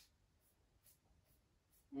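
Near silence, with faint scratchy strokes of a paintbrush on a wooden table leg.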